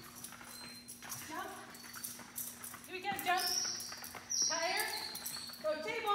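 A dog agility handler calling short commands to her dog as it runs the jumps, about four brief calls that rise and fall in pitch. A steady low hum runs underneath.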